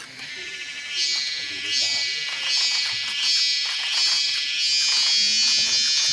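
A high, pulsing insect buzz from the forest begins about a second in, beating about three times every two seconds. It swells into a steady drone near the end.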